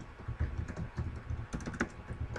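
Typing on a computer keyboard: an irregular run of keystroke clicks as a name is typed.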